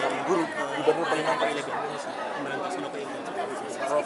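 Several people talking over one another at once: crowd chatter with no single voice standing out.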